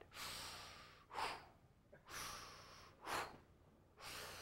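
A man breathing deliberately and rhythmically close to a lapel microphone: a long breath followed by a short sharp one, twice, about every two seconds.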